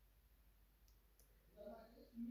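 Near silence: room tone, with two faint clicks about a second in and a soft, quiet voiced sound from the speaker near the end as she draws breath to go on.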